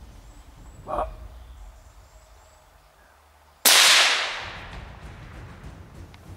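A single .308 rifle shot, sudden and loud about three and a half seconds in, with an echo that trails off over a second or so: the shot that drops a muntjac doe on the spot.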